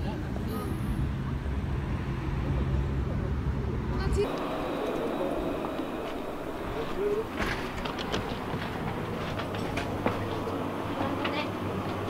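A steady low outdoor rumble that stops abruptly about four seconds in, giving way to an indoor background of faint, murmured voices and occasional small clicks.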